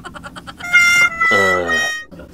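Cartoon-style comedy sound effect edited in: after a springy wobble dies away, a held high whistle-like tone sounds with a cry that falls in pitch over about half a second.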